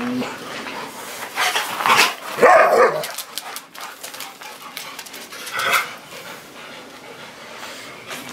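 Bouvier des Flandres dogs barking while playing together: a cluster of loud barks about two to three seconds in and another single bark near six seconds.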